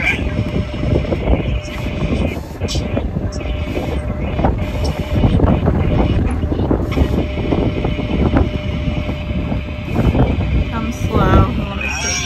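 Wind buffeting the microphone in irregular gusts over the steady low running of a pickup truck's engine as the truck backs slowly toward the RV's fifth-wheel hitch.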